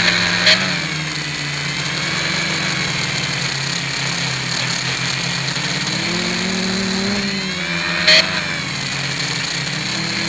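Quadcopter's electric motors and propellers running as heard from the onboard camera, the pitch rising and falling with throttle. The propellers are not yet balanced and one motor vibrates heavily. Two sharp clicks, about half a second in and about eight seconds in.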